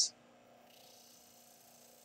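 Near silence: a faint steady hum and hiss.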